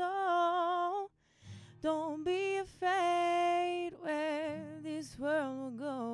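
A woman singing a folk song in long held notes with a slight waver, over acoustic guitar accompaniment.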